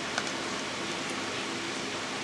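Steady background hiss with one faint click about a quarter second in, as small plastic self-inking stamps are handled.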